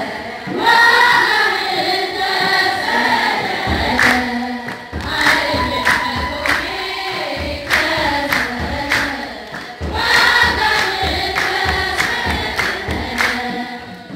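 A crowd of women singing an Ethiopian Orthodox Christmas hymn together, with rhythmic hand clapping. Low thumps keep time with the clapping from about four seconds in.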